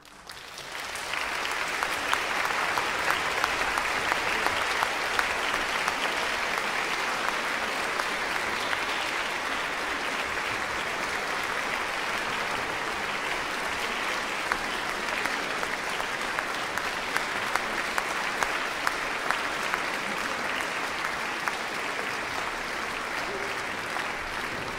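Audience applauding in a concert hall after a symphony ends: a dense, steady clatter of many hands clapping that swells up within the first second and then holds.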